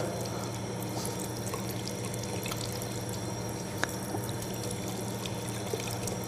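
Water running steadily from a tap onto a foot being washed and rubbed by hand over a basin, with one faint click a little over halfway through.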